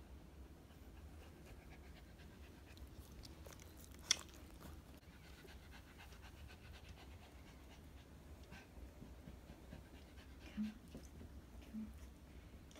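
Small dog panting softly, with a single sharp click about four seconds in.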